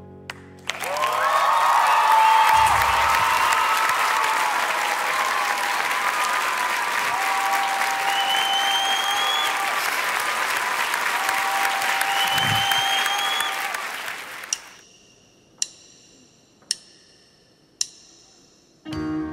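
Studio audience applauding and cheering, with two rising whistles, dying away about three-quarters of the way in. Then four sharp clicks about a second apart: a drummer clicking his sticks together to count in a song.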